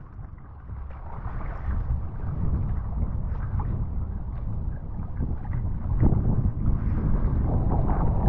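Wind buffeting an action-camera microphone as a low rumble, with water sloshing and splashing around a kitesurfer sitting in the sea.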